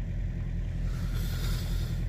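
Engine idling, a steady low rumble heard from inside a truck's sleeper cab.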